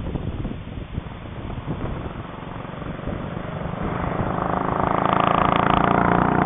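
A 1962 Triumph Tiger Cub's single-cylinder four-stroke engine approaching along the road, growing steadily louder from about three and a half seconds in as the motorcycle nears.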